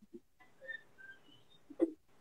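Faint, garbled audio from a choppy live video-call connection: short whistle-like tones at scattered pitches, then a brief louder burst near the end.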